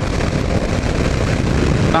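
2009 Kawasaki KLR 650's single-cylinder engine running at a steady cruise, mixed with a steady rush of wind noise on the helmet-mounted camera's microphone.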